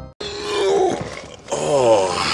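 A man's drawn-out, wordless vocal sounds after a brief silence, the pitch sliding downward.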